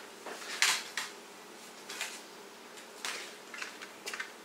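Light handling noises: a short rustle-like noise about half a second in, then a few faint knocks and clicks of small objects being moved.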